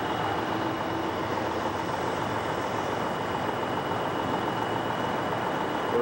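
Steady running noise of semi trucks idling in a line of stopped highway traffic, with a faint steady high tone running through it.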